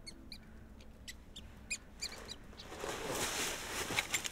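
Small birds chirping: about six short high chirps spread over the first two and a half seconds, then a rustling noise that swells over the last second and a half.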